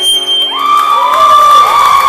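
Audience cheering and whooping at the end of an acoustic guitar song: high whoops rise in pitch about half a second in and are held over crowd noise, while the guitar's last notes fade.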